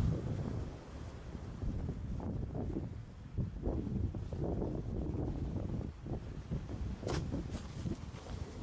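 Wind buffeting the microphone in uneven gusts, with two short crisp sounds about seven seconds in.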